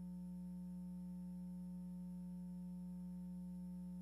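A steady low electrical hum, one unchanging buzzy tone with no other sound.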